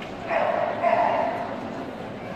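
Agility dog barking twice in quick succession as it runs the course, over the steady murmur of a large hall.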